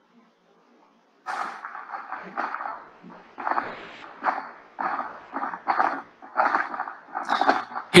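Frogs calling in a night-time nature-film clip played back over a webinar: a fast series of short repeated calls, about one to two a second, starting just over a second in.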